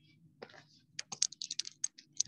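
A quick run of light clicks, about eight in a second, starting about halfway through, over a faint low hum.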